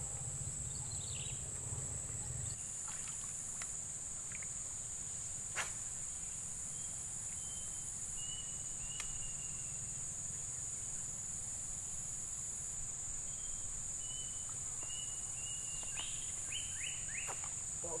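Insects, crickets or cicadas, droning in a steady high-pitched chorus over a wetland rice field. A single sharp click comes at about five and a half seconds, and a few faint short chirps follow later on.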